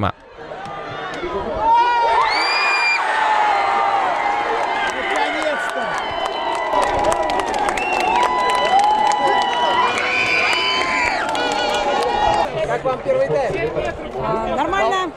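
A crowd of football fans cheering a goal: many voices shouting and whooping with long drawn-out yells, with hand-clapping, swelling up over the first two seconds and then staying loud.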